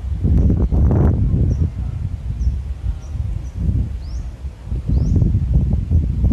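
Wind gusting on the microphone in irregular low rumbles, with a bird giving short high chirps throughout, three of them quick rising chirps in the second half.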